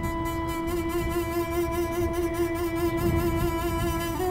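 Background music: a single long bowed-string note held steadily, over a low steady rumble.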